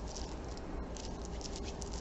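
Hands rubbing lotion in against each other: a faint, steady soft rubbing.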